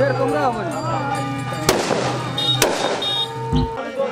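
Music with a singing voice, broken by two sharp firecracker bangs about a second apart in the middle.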